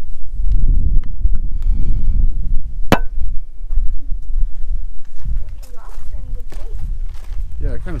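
Wind buffeting the camera microphone as a loud, uneven low rumble, with a single sharp click about three seconds in. Faint voices come in toward the end.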